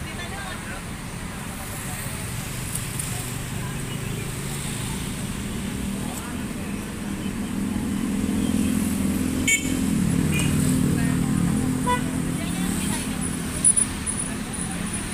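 A coach's engine idling steadily, growing louder for a few seconds in the middle, under faint background voices. A sharp click about nine and a half seconds in and a couple of short knocks near the end.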